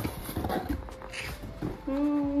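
Cardboard and paper packaging handled while a parcel is unboxed: rustles and light knocks. Near the end a short, steady hummed note.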